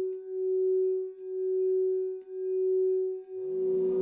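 Crystal singing bowl sounding one sustained tone that swells and fades about once a second. Near the end a fuller chord of tones swells in beneath and above it.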